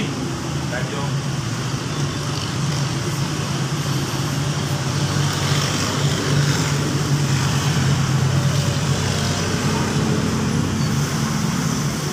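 A steady low hum and rumble of background noise, a little louder in the middle.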